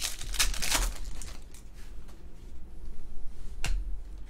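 Foil trading-card pack torn open by hand: a crinkling rip in the first second, then softer rustling of wrapper and cards, with one sharp click about three and a half seconds in.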